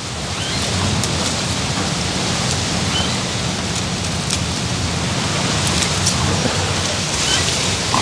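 Strong wind blowing over the microphone and through the garden plants: a steady rushing noise with a low rumble, a few faint ticks.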